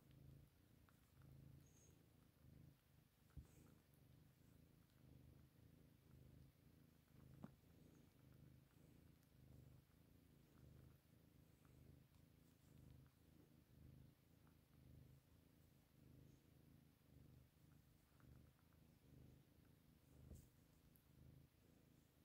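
A cat purring faintly, the purr swelling and fading about once a second, with two faint clicks early on.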